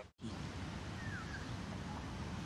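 Open-air golf course ambience: a steady low hiss of outdoor background noise after a brief dropout at the very start, with one short falling chirp about a second in.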